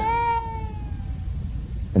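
A young child's long wailing cry: one held, high note falling slightly in pitch and fading out about a second in.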